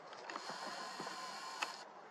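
A camera being handled and adjusted while re-aiming: small mechanical clicks over a steady high hiss that cuts off suddenly near the end, with one sharper click just before it stops.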